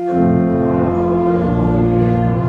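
Church music: sustained organ-like chords with low bass notes under voices singing, the chord changing about a second and a half in. It falls where the sung acclamation before the Gospel comes in the Mass.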